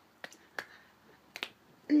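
A few sharp finger snaps, spaced irregularly over about two seconds, from a woman snapping along with her hands as she moves.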